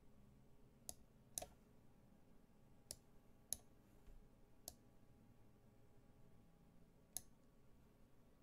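Faint, sharp computer mouse clicks, about six at irregular intervals, as moves are played on an online chess board.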